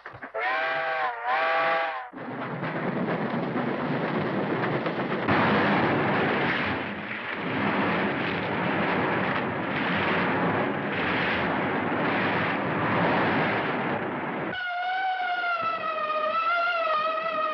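Steam locomotive whistle giving two short blasts, then the train running past loudly with rhythmic swells in its noise, as heard on an early 1930s film soundtrack. Music begins near the end.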